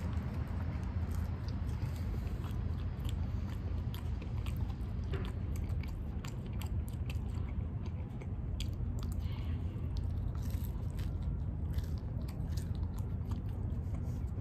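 A person chewing mouthfuls of St. Louis-style cracker-thin-crust pizza close to the microphone: many small, irregular clicks over a steady low rumble.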